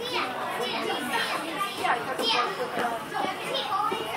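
Several children's voices talking and calling out over one another in a large hall.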